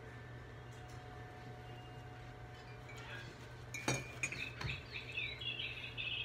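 A quiet room with a steady low hum; a sharp clink comes about four seconds in, then a run of high, twittering chirps.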